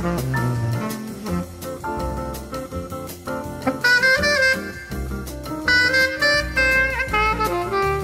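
Recorded bossa nova jazz: a tenor saxophone plays a melodic solo over a rhythm section of bass and light drums.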